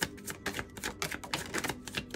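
A deck of tarot cards being shuffled by hand, a run of quick, uneven clicks, several a second.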